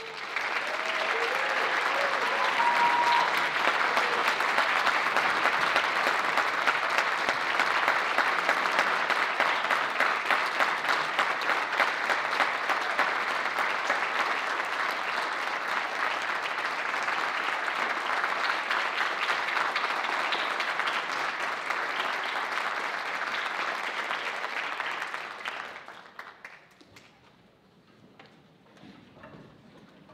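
Concert audience applauding steadily after an orchestral piece, with a few brief shouts from the crowd in the first seconds; the clapping dies away about 26 seconds in.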